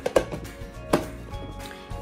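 Two sharp plastic clicks about a second apart as a plastic food container's lid is handled and pressed, over background music.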